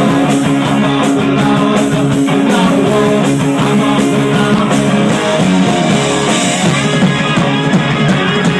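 Live rock band playing loud punk rock, with electric guitars and a drum kit.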